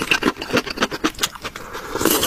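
Close-miked eating sounds: a quick, irregular run of small wet clicks and smacks from chewing and slurping.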